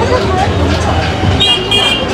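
A man's voice rapping over a steady hum of street traffic, with a brief high-pitched tone near the end.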